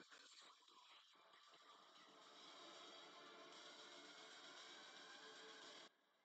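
Near silence: a faint steady hiss, with a few faint ticks in the first second or so.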